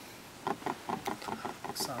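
A person's voice speaking indistinctly, starting about half a second in after a moment of quiet room tone.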